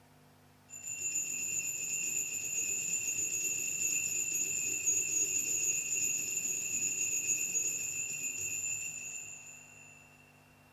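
Altar bells ringing for the elevation of the host at the consecration. The ringing starts suddenly about a second in, holds steady with a fast shimmer for about nine seconds, and fades out near the end.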